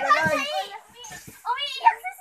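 Children's high-pitched voices talking and calling out as they play, with a brief dull thump near the start.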